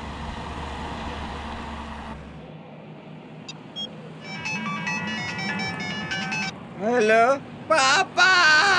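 A mobile phone ringing with a melodic ringtone for about two seconds midway, followed near the end by a man's loud crying voice on the phone. The first couple of seconds hold the tail of background music dying away.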